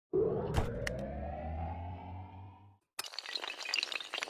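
Animated-intro sound effects: a rising synthetic swell over a low hum, with two sharp clicks, fading out before three seconds in. After a brief silence comes a dense clatter of many small hard pieces, like tiles or shards tumbling.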